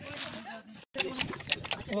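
Voices, then, about a second in, a quick run of sharp clicks from a hand-lever bucket grease pump being worked.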